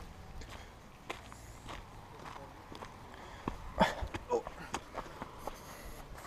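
Footsteps on beach sand, soft and irregular, with a few faint voice sounds about two thirds of the way through.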